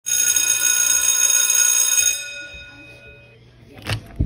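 An alarm tone rings steadily and loudly for about two seconds, then fades away over the next second or so. A brief noise follows near the end.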